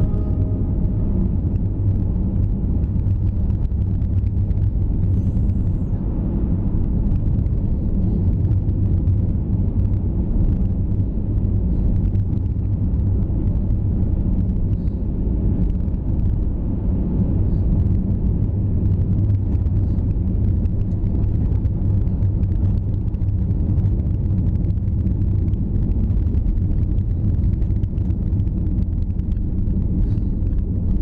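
Car driving on a snow-covered road, heard from inside the cabin: a steady low rumble of engine and tyres.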